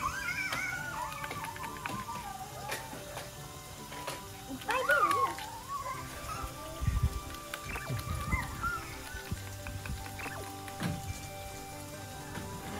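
Background music with held notes, over which a young child gives high, gliding excited squeals near the start and again about five seconds in.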